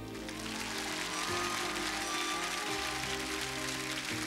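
A slow, tender song plays while a studio audience breaks into applause right at the start, the clapping continuing over the music.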